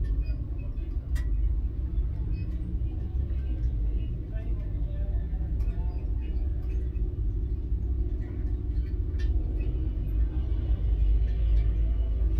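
A race car engine idling, a steady low rumble heard from inside the cockpit, with faint voices in the background.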